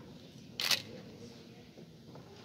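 A single camera shutter click a little over half a second in, over low murmur in the hall.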